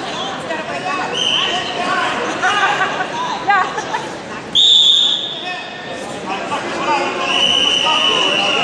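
A referee's whistle blown three times over steady spectator chatter and shouts: a short blast about a second in, the loudest and sharpest about halfway, and a longer one near the end.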